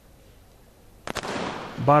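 Starting pistol fired once about a second in, a sharp crack with a quick echo, followed at once by a rising wash of crowd noise as the race starts.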